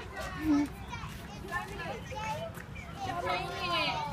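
Several children's high voices chattering and calling out at once, overlapping, with no single voice standing out.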